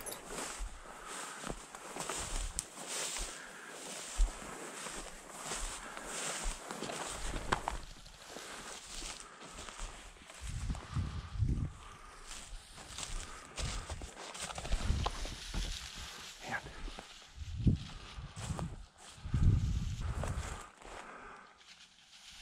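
Footsteps and the swish of dry prairie grass brushing against legs as a person walks through a field, irregular throughout, with heavier low thuds in the second half.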